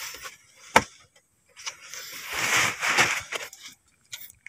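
Paper shopping bag rustling as it is handled and looked into, with a single sharp tap just under a second in.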